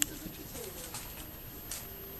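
Six-week-old Yorkiepoo puppy making soft, low cooing grunts, in short rising and falling calls. There is a sharp click at the start and another near the end.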